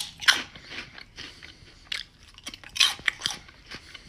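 A person biting and chewing close to the microphone: a few sharp, irregular crunches with quieter mouth noise between.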